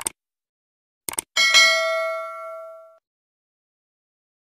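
Subscribe-button sound effect: a short click, then a quick double click about a second in, followed by a bright bell ding that rings out and fades over about a second and a half.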